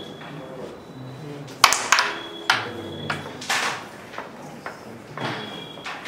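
Carrom break shot: the striker is flicked into the stacked centre coins about one and a half seconds in with a sharp clack, followed by further clacks and rings as the wooden coins scatter and strike each other and the cushions over the next few seconds.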